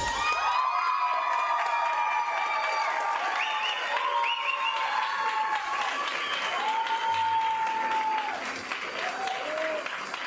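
Crowd applauding and cheering, with long held shouts, just after a live band's song ends. The last of the band's sound dies away in the first half second.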